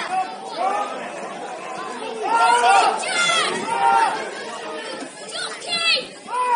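Voices shouting and calling at a football match, over background chatter, with the loudest shouts about two to four seconds in.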